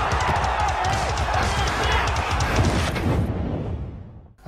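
Short TV segment jingle: music with a fast, driving beat and heavy bass, fading out near the end.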